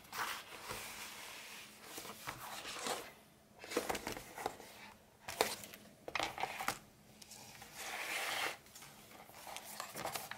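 Stiff leather being handled and unfolded: irregular rustles and scuffs as leather flaps slide over one another and across a wooden tabletop, with a few soft taps.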